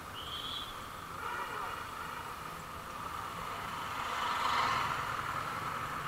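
Street traffic in a jam of motorbikes, with voices mixed in and a brief high whistle-like tone just after the start; the noise swells about four seconds in.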